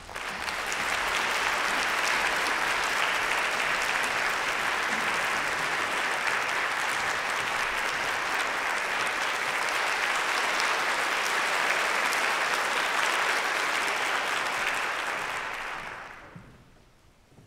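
Concert-hall audience applauding steadily, starting abruptly and dying away near the end, in welcome as the conductor and pianist take the stage.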